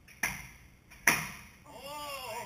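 Two sharp snaps of compound bows being shot, the strings released about a second apart, the second shot louder. A voice starts just before the end.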